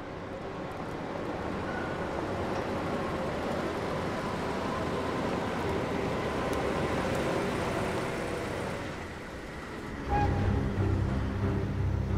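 A car's engine and tyres running as it drives up, a steady rumble that swells gently and then fades away. Near the end, low, tense drum-led music comes in.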